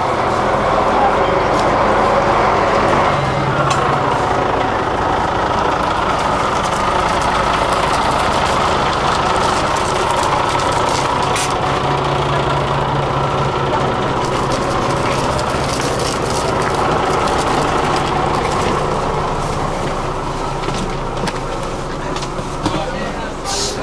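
City bus engine running steadily, a constant low drone with an even rumble.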